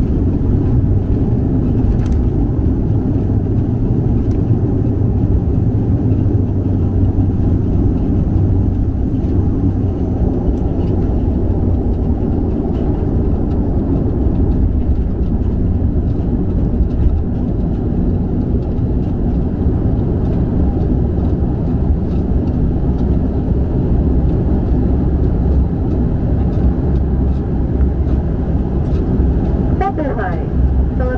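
Cabin noise of a Bombardier Dash 8 Q400 turboprop airliner taxiing after landing: a steady low drone from the engines and the ground roll.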